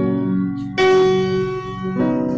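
Worship music: sustained, bell-like keyboard chords, with a new chord struck just under a second in and left to ring and fade, in a pause between sung lines.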